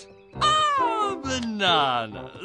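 A cartoon character's voice in two long, drawn-out calls that fall in pitch, the first starting about half a second in, over light background music.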